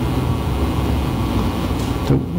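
Steady low rumble of room noise in a large hall, with no speech.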